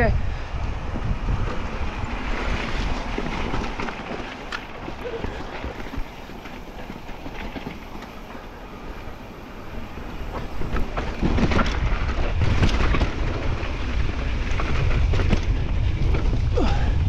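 Mountain bike descending a rocky dirt trail: wind rushing over the microphone and tyres rolling over dirt and stones, with rattles and knocks from the bike over rough ground. It eases off for a few seconds in the middle, then comes back louder with a cluster of knocks.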